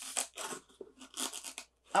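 A small cardboard box being forced open by hand: the flaps scrape, crinkle and tear in a run of short, scratchy bursts, the box stiff and hard to get open.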